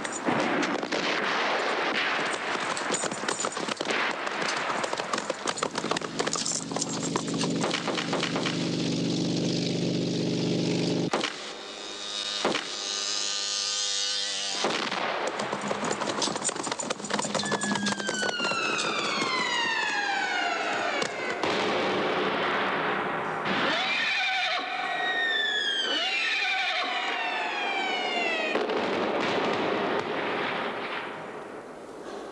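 Battle soundtrack: a continuous noise of explosions and gunfire, with a steady low drone near the middle. In the last third comes a series of high falling whistles of incoming shells, several of them overlapping.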